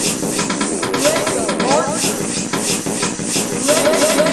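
Music track built from short recorded clips chopped into a beat, the kind made by the VidRhythm app: a hissing sample repeats in a quick, even rhythm while a short snippet of voice recurs every second or two.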